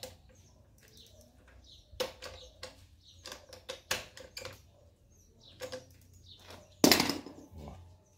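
Scattered metallic clicks and clanks as pliers tighten a pedal crank onto the front wheel hub of a pedal trike, with a louder clatter about seven seconds in.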